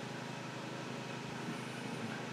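A steady, even background hum with no distinct events.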